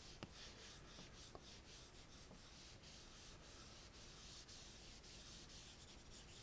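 Faint rubbing and tapping of an Apple Pencil's plastic tip on an iPad's glass screen: a quick run of short strokes, about three a second, as texture is brushed in.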